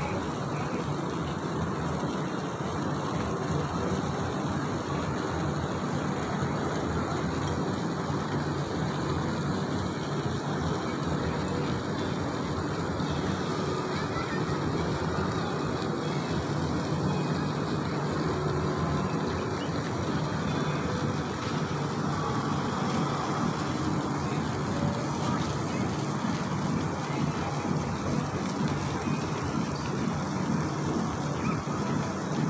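Steady outdoor city ambience: a constant hum of road traffic with distant voices mixed in.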